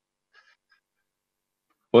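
Near silence with a few faint, brief ticks about half a second in; a man's voice starts speaking again right at the end.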